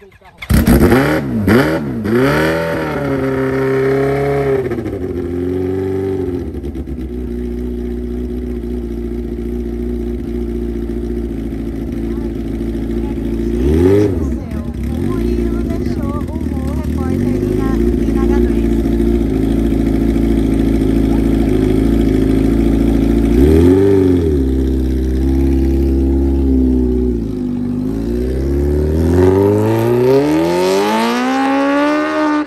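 Supercharged Kawasaki Ninja H2 drag bike's inline-four firing up from cold about half a second in, then revved a few times. It settles into a steady idle with two short throttle blips, and the revs climb steadily near the end.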